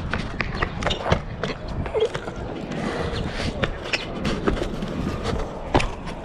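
Irregular footsteps and knocks on stone paving, heard over a steady low rumble from a moving handheld action camera.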